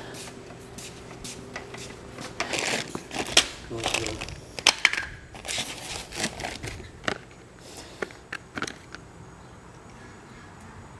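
Rustling and clicking of cardboard and small parts being handled, as someone rummages in a cardboard box, starting a couple of seconds in and running as a string of short clicks and crinkles.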